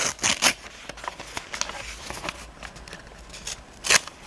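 Sheets of white paper being handled on a table: short dry rustles and slides of the paper, a few in the first half-second and a louder rustle near the end, with small clicks and touches in between.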